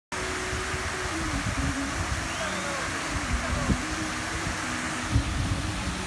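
Steady outdoor hiss with an uneven low rumble. Faint steady tones step in pitch in the background.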